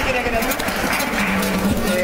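Voices talking in a room over background music with held, steady notes.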